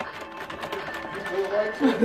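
Fast typing on a computer keyboard: a quick run of key clicks, with background music and faint voices underneath.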